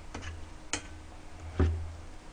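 Metal ladle scooping braised pork and radish out of a stainless steel pot: three light clicks and taps of metal on the pot, the last and loudest with a dull knock about one and a half seconds in.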